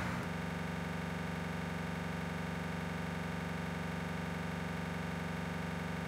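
A steady, unchanging electronic drone with many overtones, starting abruptly just after the spoken amen and holding at one even level.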